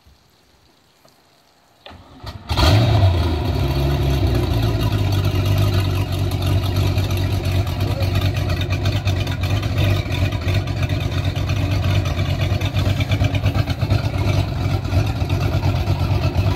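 Mercruiser 350 small-block V8 sterndrive engine cranking briefly about two seconds in, catching, and then running at a steady idle with a loud, even exhaust pulse.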